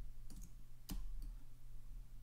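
A few faint computer mouse clicks, the sharpest about a second in, over a steady low electrical hum.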